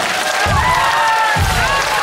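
Live pop concert music from the band, with a bass drum beat, and audience cheering and high calls over it.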